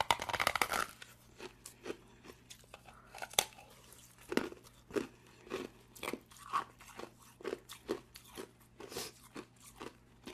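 A block of ice bitten and chewed close to the microphone: a dense cracking crunch as a piece is bitten off in the first second, then sharp chewing crunches about two a second.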